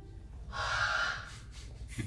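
A single breathy exhale, starting about half a second in and lasting about a second.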